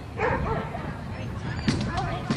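A dog barking, with short yelps about a quarter of a second in, over voices in the background.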